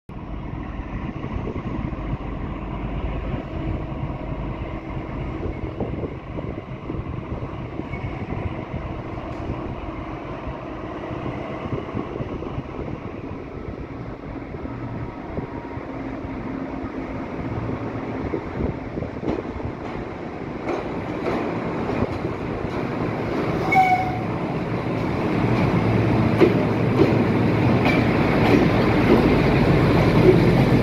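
MÁV class 418 (M41) 'Csörgő' diesel-hydraulic locomotive's engine running as it pulls out with a passenger train, growing steadily louder over the last third as it draws near and passes close by. A brief higher tone sounds about three-quarters of the way through.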